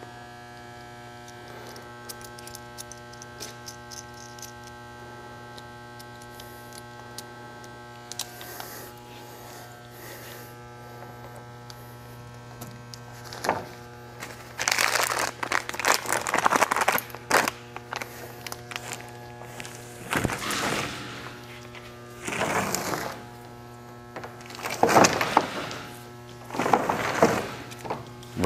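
A steady electrical hum with a buzzing edge. From about halfway on, a series of loud scraping, rubbing bursts of a second or two each as a pipe-repair packer on a push rod is shoved along the inside of a 4-inch PVC pipe.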